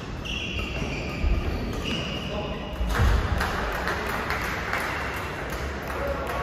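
Badminton play echoing in a large sports hall: court shoes squeak twice on the floor and there are a couple of thuds, with voices calling out in the second half.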